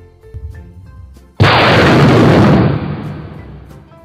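Thunderclap sound effect: a sudden loud crack about a second and a half in that rumbles and fades away over the next two seconds, over light background music.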